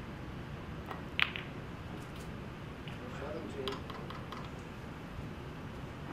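Snooker cue tip striking the cue ball: one sharp click about a second in, the loudest sound, followed by fainter clicks of the balls knocking together.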